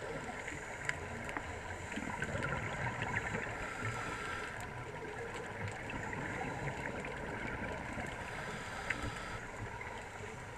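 Muffled underwater ambience picked up through a camera's waterproof housing: a steady rushing noise with scattered faint clicks throughout.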